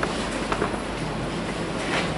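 Steady room noise in a large hall, with a couple of faint clicks near the start and about half a second in.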